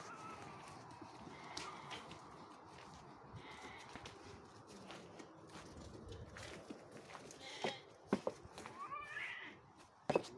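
Latxa sheep shuffling and stepping on straw, earth and stones as they crowd through a pen gate, with faint scattered hoof knocks. A couple of sharper knocks come near the end, then a faint animal call.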